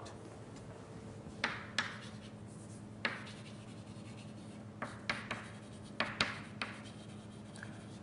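Chalk writing on a blackboard: a string of short, irregular taps and scratches of chalk strokes, over a faint steady room hum.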